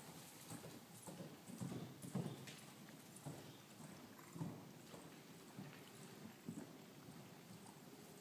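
Faint, soft hoofbeats of a horse cantering on arena sand, a dull irregular thudding.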